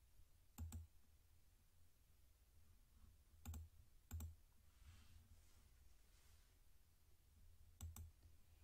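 Faint computer mouse clicks over near-silent room tone: a quick double click just under a second in, then single clicks at about three and a half and four seconds, and one more near the end.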